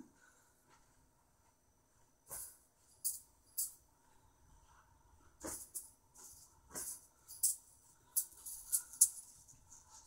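Juggling balls rattling in short, scattered bursts as they are picked up and gathered in the hands between attempts, more often toward the end.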